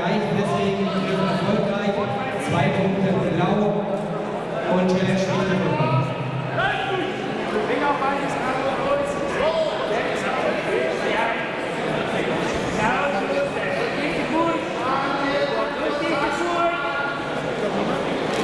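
Several voices talking and calling out over one another in a large sports hall, with no single speaker standing out.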